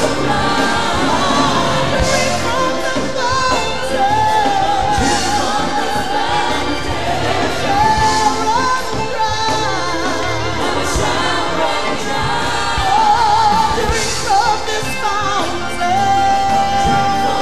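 Gospel worship music: a choir and worship singers with band accompaniment, a lead voice holding long notes with vibrato over the choir.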